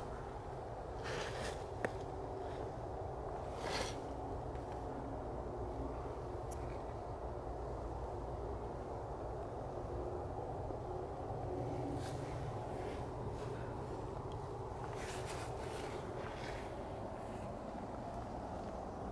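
Steady low outdoor background rumble in the woods, with a few short, soft rustles, about a second in, near four seconds and again late on.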